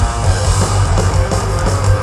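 Thrash metal band playing live with heavily distorted electric guitar, bass and fast drum kit, in an instrumental passage with no singing.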